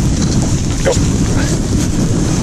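Wind rumbling steadily over the microphone, with a single short spoken word about a second in.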